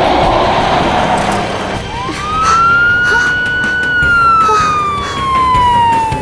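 A vehicle rushes past, then about two seconds in a police siren starts: one long wail that rises in pitch, holds, and slowly falls.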